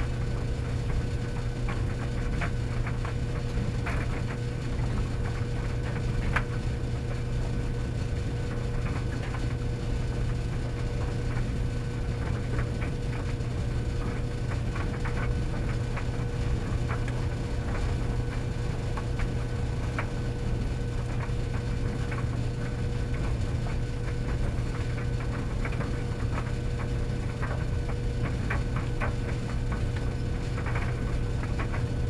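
Commercial laundromat tumble dryers running: a steady low hum with a faint constant tone above it, and irregular light clicks and ticks scattered throughout as the load tumbles in the turning drum.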